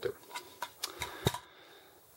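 A quick run of light clicks and taps, about half a dozen in the first second or so, from a rifle magazine and loose brass cartridges being handled and set down.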